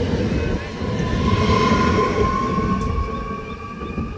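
Trenitalia 'Pop' electric multiple unit pulling away: wheels rumbling on the rails under a high electric whine that rises slightly in pitch as the train gathers speed. The sound fades in the last second as the train draws away.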